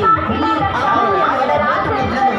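A crowd of people talking over one another, with no single clear speaker.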